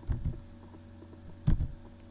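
A steady low electrical hum, with short dull thumps picked up by the microphone: a couple near the start and a louder one about a second and a half in.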